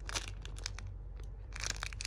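Clear plastic bag crinkling as a hand grips and turns a bagged squishy foam toy, in irregular crackles that bunch up near the start and again toward the end.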